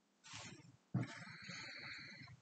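A man's faint breath, then a quiet, rough, low throaty grunt lasting about a second.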